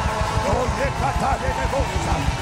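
Live worship band music with a busy, pulsing low beat and electric guitar, and a man's voice vocalizing over it through the microphone.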